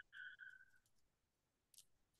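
Near silence over a video call, with a faint brief tone early on and one faint short click near the end.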